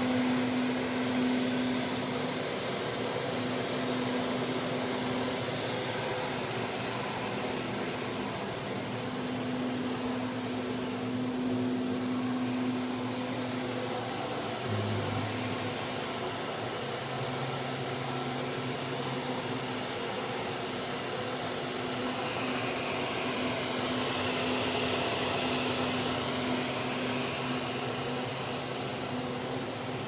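Steady drone of an industrial blower motor running: a hum with a rushing hiss over it, holding level throughout.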